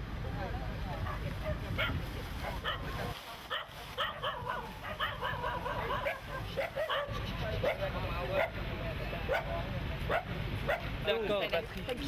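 People talking in the open over a steady low rumble of wind and background noise.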